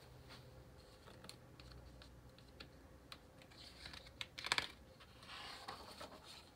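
Paper catalog page being handled and turned: faint scattered clicks and rustles, then a louder, crisp rustle about four and a half seconds in and more rustling near the end as the page is flipped.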